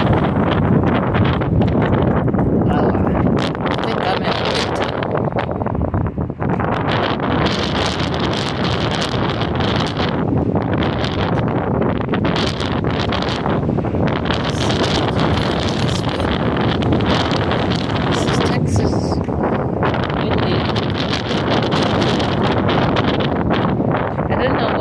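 Gusty wind blowing across a phone's microphone: a loud, continuous rumble that swells and dips.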